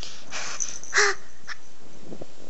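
Seven-month-old baby making short, raspy breathy sounds close to the microphone: a puff about half a second in, then a louder harsh squawk about a second in.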